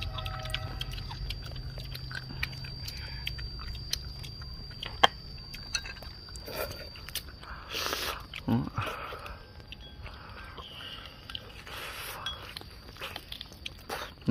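People chewing and biting duck meat off the bone: soft wet mouth sounds with scattered small clicks and crunches, the sharpest click about five seconds in, and a brief low murmur about halfway through.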